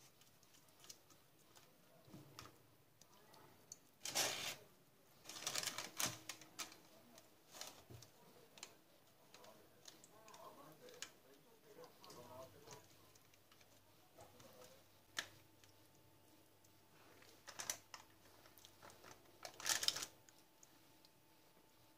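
Baking paper rustling and crinkling in short bursts, with small clicks and taps, as whole sea bass are turned and brushed with sauce on a paper-lined baking dish.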